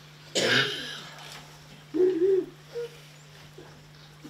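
A single cough about half a second in, followed around two seconds in by a short, low vocal sound, over a steady low hum.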